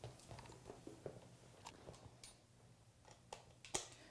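Faint handling of a coiled cable and its plastic connector: a few light clicks and taps as the connector is fitted into a port on the laser system's power pack, over a low steady hum.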